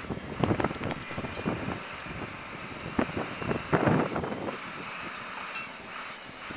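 Blizzard wind gusting and buffeting the microphone in rushing swells. The strongest gusts come about half a second in and again around three to four seconds.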